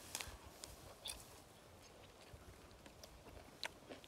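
Faint sounds of biting into and chewing a soft, overripe mango: a few small clicks, one about a second in and another near the end, over near silence.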